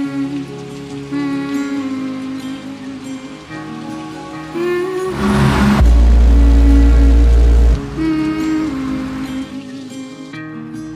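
Car-audio SPL burp: the Ford Focus 3's subwoofer system plays one bass tone at 58 Hz, lasting about two seconds and measured at 151.7 dB, then cuts off suddenly. It is so loud that the microphone is overloaded and the tone comes through distorted and flattened, preceded by a short crackling rush as it builds. Background music plays over it throughout.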